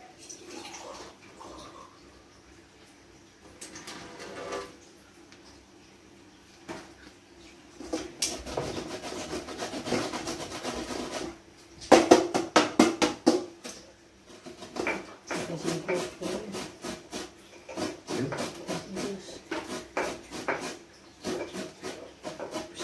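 Pestle working spices in a mortar: a stretch of steady scraping, then a quick run of sharp pounding strikes about twelve seconds in, followed by slower, irregular grinding strokes.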